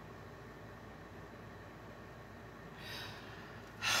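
Quiet room tone with a soft breath drawn in about three seconds in, just before an exclamation.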